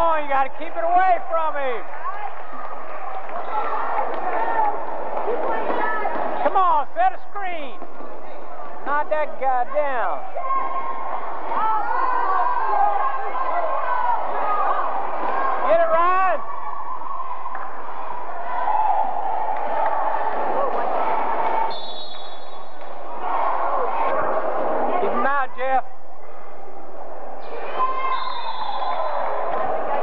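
Basketball game in a gym: indistinct voices of players and spectators calling out over a steady hubbub, with many short, sharp squeaks of sneakers on the court floor.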